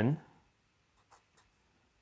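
Fountain-pen nib on paper: a few faint, short writing scratches about half a second to a second and a half in, after the end of a spoken word.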